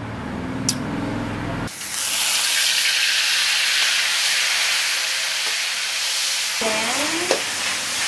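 Food sizzling loudly as it is stir-fried in a hot steel wok, starting suddenly about two seconds in after a short low hum and a couple of clicks. Near the end the metal spatula scrapes and squeaks against the wok.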